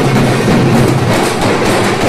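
Many large barrel-shaped dhol drums beaten with sticks together in a fast, steady rhythm, loud and dense.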